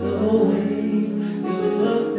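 Live concert music through a stage PA: voices singing held, sustained notes over a backing band.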